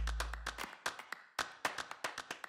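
Rapid, irregular run of small sharp clicks and taps from hands handling a small kitchen bottle, as the last note of the music fades out in the first half second.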